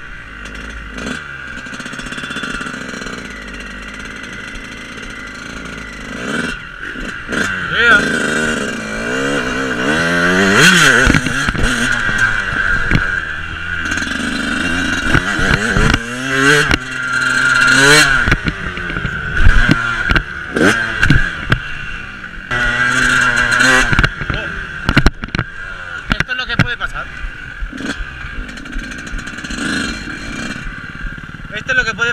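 Motocross bike engine being ridden hard on a dirt track, its revs climbing and dropping again and again as the rider accelerates and backs off, with scattered knocks and clatter from the bike over the rough ground.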